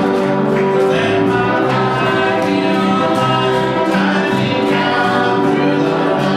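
A congregation singing a gospel hymn together, many voices in long held notes.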